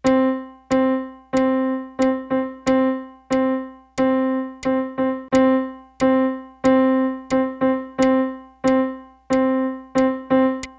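Middle C played over and over on a piano keyboard, tapping out a rhythm: three even quarter-note beats then two quick eighth notes, the pattern repeating. Each note strikes and dies away.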